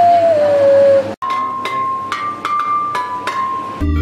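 Homemade wind instrument made from a cut plastic bottle, blown to one held tone that rises a little and falls again, stopping about a second in. After a brief break comes a tune of short, sharply struck notes, and a fuller music track with a bass line starts near the end.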